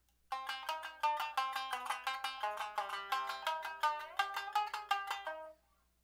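Tsugaru shamisen struck with a bachi in a quick run of notes, alternating down and up strokes in an up-down bachi drill. One note slides upward about four seconds in. The playing stops shortly before the end.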